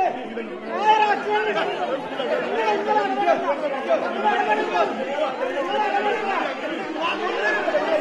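A crowd of many voices talking and shouting over one another at once in a scuffle, a dense, unbroken din in a large hall.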